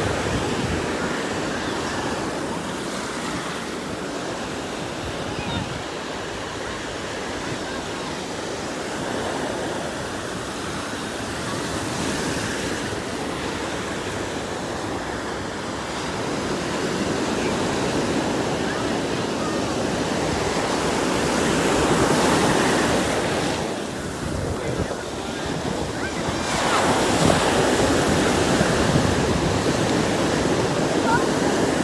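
Ocean surf breaking and washing over the shallows in a continuous rush, with wind buffeting the microphone. The wash swells louder in the last few seconds as bigger waves come in.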